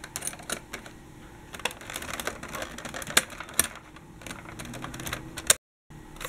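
Irregular light plastic clicks and taps from hands handling a plastic toy tram, with one sharper click near the end.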